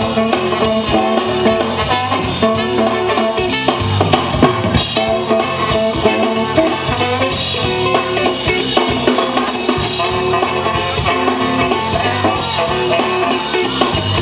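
Live funk band playing an instrumental: trumpet and trombone horn lines over a steady drum-kit groove with guitar.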